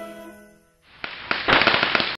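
The last held chord of the music fades out. After a short gap, a dense crackle of many rapid sharp pops starts and grows louder about halfway through.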